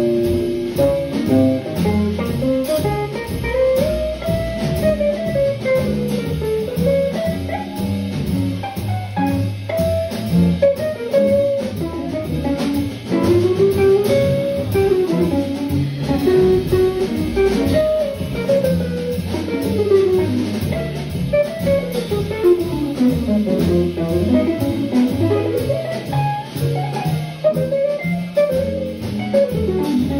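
Live jazz quartet of two archtop guitars, bass and drums playing. A guitar plays flowing single-note lines that rise and fall over a stepping bass line and drums.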